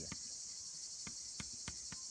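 A steady high-pitched insect chirring runs throughout. Over it come a handful of sharp, short clicks of chalk striking a blackboard as letters are written.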